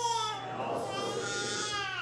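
Infant crying: two drawn-out, high wails, each falling in pitch.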